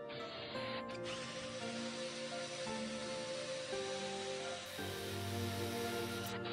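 Background music, with a jigsaw cutting through half-inch plywood under it. The cutting starts about a second in and grows brighter near the end.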